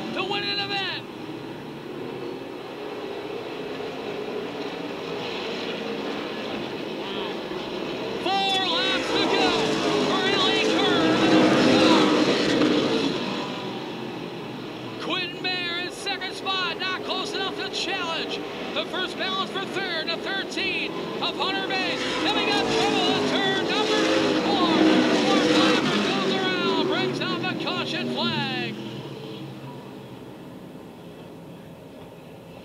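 Pack of asphalt late model stock cars racing past, their V8 engines revving up and down, swelling louder twice as the field comes by.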